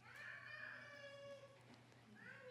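A faint, drawn-out pitched whine lasting about a second and a half, falling slightly in pitch toward its end.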